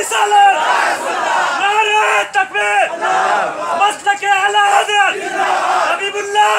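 A crowd of men shouting religious slogans together, in long held shouts of about a second each, repeated several times over steady crowd noise.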